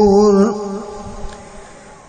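A man's melodic Quran recitation, holding the long drawn-out final note of a verse steadily until about half a second in, then its echo dying away.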